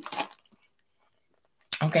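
Only speech: a woman's voice trails off, then there is a dead-silent gap of about a second before she says "Okay?" near the end.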